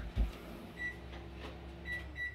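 Quiet room with a steady low hum, a soft low bump near the start, and two faint, short, high electronic beeps about a second apart.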